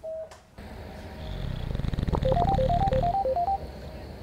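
A short electronic beep, then a mobile phone ringtone: a quick rising figure of three electronic notes repeated about four times over a low rumble.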